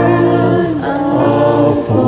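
A small mixed group of men and women singing a hymn together in harmony. They hold long notes and move to a new note about half a second in and again near the end.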